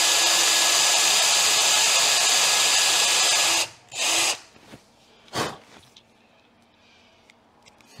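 Cordless drill running steadily as a small bit drills out the broken-off aluminium thread in the mirror mount of a motorcycle's front brake fluid reservoir. It stops about three and a half seconds in, is triggered again briefly, and a short knock follows before it goes quiet.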